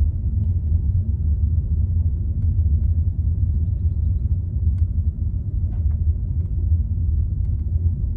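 Steady low rumble of a car driving, heard from inside the cabin: engine and tyre noise on the road, with a few faint ticks.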